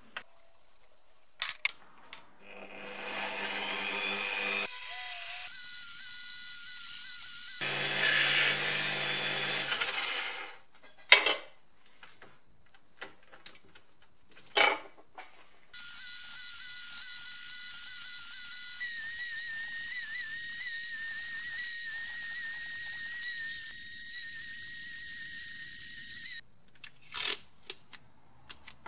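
Pillar drill spinning a wire cup brush, with the oil can's metal parts held against it to clean them: three stretches of brushing, the last and longest about ten seconds, each carrying a thin steady whine. Sharp clicks and knocks of parts being handled come between them and near the end.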